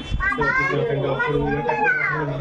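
Speech only: people talking, with a child's voice among them.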